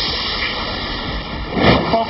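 Drilling rig machinery on the drill floor making loud, steady mechanical noise, with a brief louder rush near the end.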